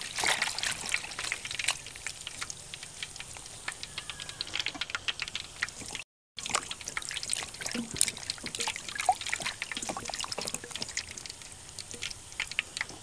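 Leafy greens being washed by hand in a stainless steel bowl of water: water trickling and splashing in many small splashes as the leaves are swished and lifted out. After a brief break just past the middle, only scattered small clicks and splashes are left.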